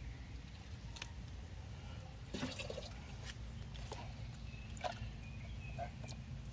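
Faint water drips and small splashes as a clear plastic container is dipped into a tub of water and lifted out, water falling from it back into the tub. About a half-dozen small drips come scattered through, roughly one a second.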